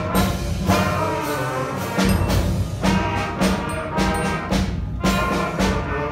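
A sixth-grade school concert band of woodwinds and brass playing together in short, evenly spaced chords.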